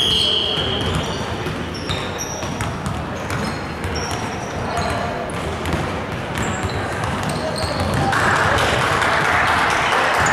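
A referee's whistle, one short blast right at the start, then a basketball being dribbled and many brief sneaker squeaks on a hardwood gym floor, with players' voices. The noise grows louder near the end.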